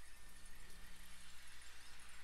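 Quiet room tone: a low steady hum under a faint even hiss, with nothing happening.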